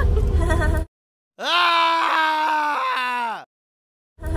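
A single drawn-out voice-like note held for about two seconds, steady in pitch and dropping at the end. It sits between two abrupt cuts to dead silence, with no background under it.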